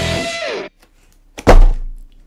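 Electric-guitar rock intro music ends about half a second in on a falling note, then after a short silence a single heavy thump as a cardboard model-kit box is set down on the workbench.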